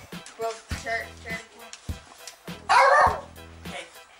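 A large dog barks once, loudly, about three-quarters of the way through, over background music.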